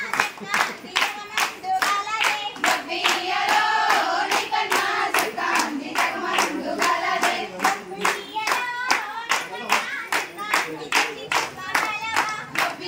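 Group of women singing together while clapping their hands in a steady beat, about three claps a second.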